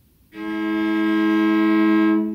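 Cello bowed on two open strings at once, sounding a fifth that is slightly out of tune: not yet a true perfect fifth. One long steady bow stroke starts about a third of a second in.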